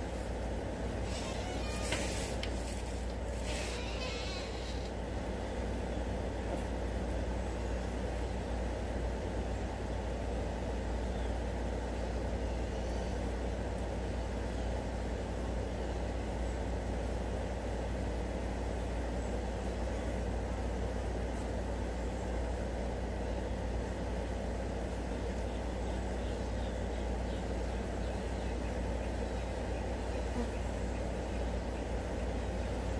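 A swarm of flies buzzing steadily while they feed on chicken bones, with a few short rustling noises between one and four seconds in.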